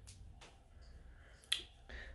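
A few faint, sharp clicks over a low steady room hum, the clearest about one and a half seconds in.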